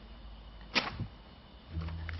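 A paper cover panel being pulled off a display board: one brief swish about three quarters of a second in, a fainter one just after, then a low thud near the end.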